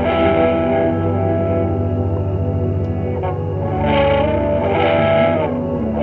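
Slow ambient meditation music of sustained, layered tones, swelling near the start and again about two-thirds of the way through.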